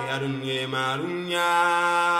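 Background music in an African style with chanted vocals holding long, steady notes; the low note steps up about a second in.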